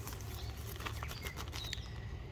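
Faint crinkling of a clear plastic bag and scattered handling clicks as a clump of dahlia tubers is lifted out of it, over a steady low outdoor rumble.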